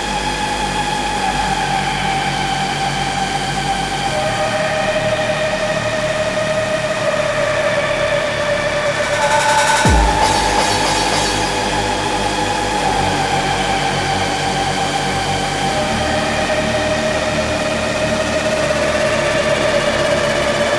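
1990s hardcore techno DJ mix: held synth notes stepping down in pitch over a steady loud bed, with a deep falling bass sweep about ten seconds in.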